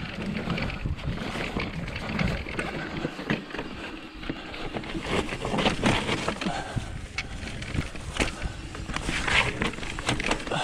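Mountain bike riding down a dirt forest trail: tyres rolling over packed dirt, with frequent clicks and knocks as the bike's chain and frame rattle over bumps.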